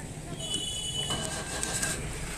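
Street traffic with a motor vehicle's engine running close by, a steady low rumble, with a thin high whine for about a second in the middle.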